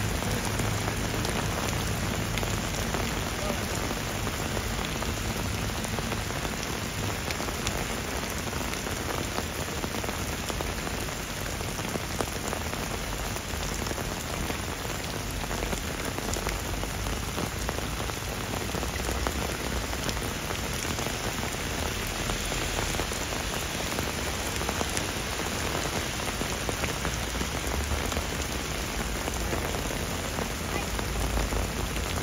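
Heavy rain falling steadily, splashing on car bodies and pavement, with a low rumble underneath at times.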